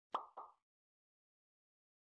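Two quick cartoon pop sound effects, about a quarter second apart, each dying away fast: the pops of a like-comment-subscribe animation as its icons appear.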